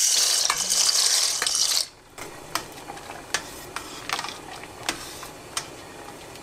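Dry pasta shells poured into a pot of boiling water, a loud hissing splash for about two seconds that stops suddenly. Then the water bubbles more quietly while a metal spoon stirs the shells, with scattered clicks against the steel pot.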